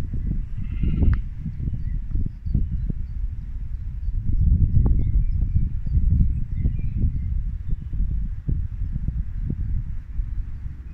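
A sheep bleats briefly about a second in, over irregular low rumbling with soft thumps. Faint bird chirps come and go.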